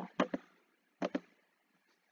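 Two pairs of short, sharp computer mouse clicks about a second apart.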